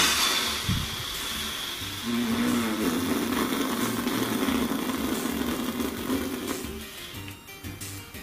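A man blowing air out hard through pursed lips, going after about two seconds into a buzzing lip trill, a raspberry of exasperation, that lasts several seconds and fades near the end.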